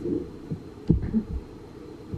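A sharp tap about a second in, with a few low thumps around it: a pen and hands handling a paper budget planner on a table, close to the microphone.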